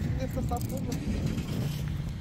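A steady low rumble, with a couple of spoken words about a second in.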